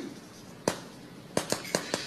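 Chalk striking and tapping on a chalkboard while words are written: one sharp click a little over half a second in, then a quick run of about five in the last second.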